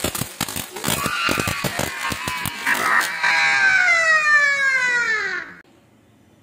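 Diwali fireworks: a ground fountain (anar) sputtering with rapid sharp cracks. Then a long whistle falls steadily in pitch for about two and a half seconds and cuts off abruptly.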